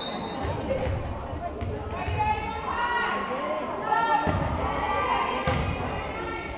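Volleyball rally: a few sharp smacks of the ball off players' hands and arms, the two loudest late on, with players and spectators calling out between the hits.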